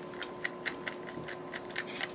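Small screwdriver working at a stuck screw in a plastic slot-car chassis: a run of light, irregular clicks, about four a second, as the tip turns in the screw head without freeing it.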